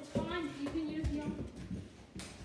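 A child's wordless voice, a held, wavering sound lasting about a second and a half, with soft knocks underneath.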